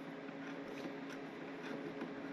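Quiet steady hum with a few faint light ticks.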